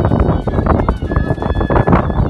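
Davul and zurna folk music: the shrill zurna holds a steady high note about halfway through, over a dense low rumble.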